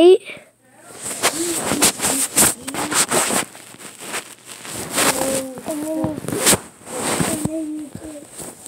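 Close rustling and crackling handling noise, with a child's voice making a few short unworded sounds in the second half.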